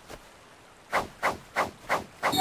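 Anime sound effects for ninja hand seals being formed: four quick swishing strokes about three a second, starting about a second in.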